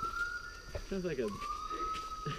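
Gibbons calling in the forest: long whistled whoops that rise in pitch and then hold, like a siren. One call fades out just under a second in, and the next begins a little after a second in.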